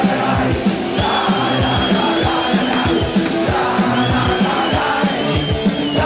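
Live punk rock from a band on stage: a fast, even kick-drum beat of about four hits a second under dense guitars and shouted vocals, with the crowd yelling. Two long, high, wavering whistles ride over the music, one about a second in and another near four seconds.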